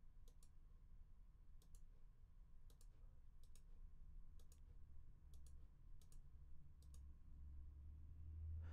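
Eight faint computer mouse clicks, about one a second. Each is a quick double tick of the button pressing and releasing as a cell is placed in a step-sequencer grid.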